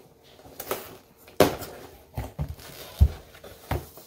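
A cardboard shipping box being picked up and handled: several knocks and scuffs, the loudest about three seconds in.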